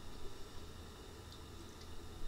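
Faint steady background hiss with a low hum: the recording's room tone.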